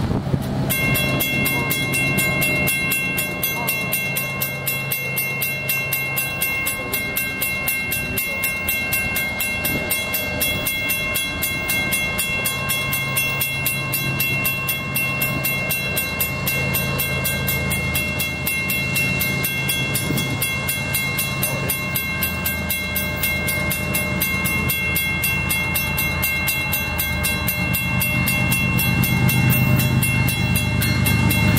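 Grade-crossing warning bell ringing in a fast, steady rhythm, starting abruptly about a second in as the approaching train activates the crossing. Underneath, the low rumble of the approaching GE ES44AC locomotives grows louder near the end.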